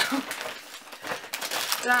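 A shopping bag rustling and crinkling as it is lifted and handled.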